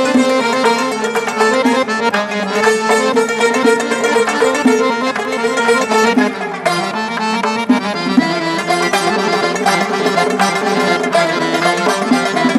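Instrumental break of Khorezmian traditional music played live by an ensemble: a busy melody line of quick notes over steady hand-drum strokes from a doira frame drum.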